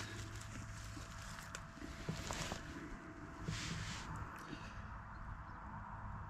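Faint footsteps and rustling in long grass and clover, with two brief swishes about two and three and a half seconds in and a few light handling clicks.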